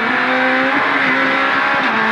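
Citroën C2 R2 Max rally car's 1.6-litre four-cylinder engine pulling hard at full throttle as the car accelerates, heard from inside the cockpit.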